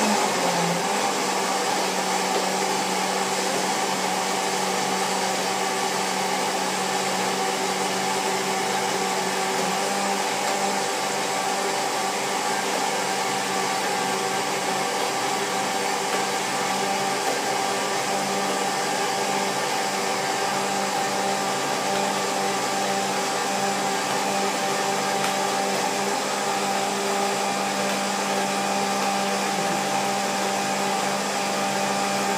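Countertop blender running at full speed, puréeing a thick corn soup. It gives a loud, even whir that holds the same pitch throughout.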